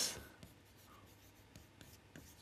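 Chalk writing on a chalkboard: faint scratching strokes with a few small clicks as the chalk meets the board.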